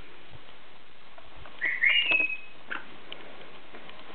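An African grey parrot whistles once, about one and a half seconds in: two quick rising notes, then a held note that sinks slightly in pitch, lasting about a second in all.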